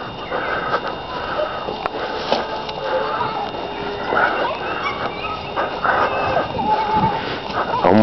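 Plastic shopping bags rustling and crinkling continuously as they are carried along.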